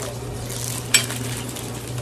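Steady background hiss and hum, with one sharp click about a second in as a plastic-wrapped metal serving spoon is handled.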